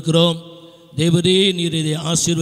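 A man's voice preaching in Tamil into a microphone, drawing out his vowels in a chant-like delivery, with a short pause near the middle and then one long held syllable.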